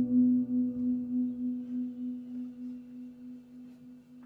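A single guitar note played through an effects unit, ringing out at the end of a song and fading away steadily. It wavers evenly about three times a second as it dies.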